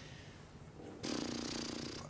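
Quiet room tone, then about a second in a breathy rush of air close to a handheld microphone, lasting about a second: a person drawing breath just before speaking.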